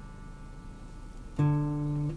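Acoustic guitar: faint ringing from earlier strings, then a single note plucked about one and a half seconds in and left to ring. The note is the minor seventh of a Dorian scale shape, reached with a stretch back on the fretboard.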